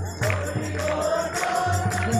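A choir singing a hymn, holding a long note, over a steady percussion beat with a jingling, tambourine-like sound.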